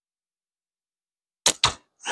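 A Cygnus Bold slingshot with flat bands fired once: two short, sharp snaps close together about a second and a half in, the bands releasing and the shot striking the target.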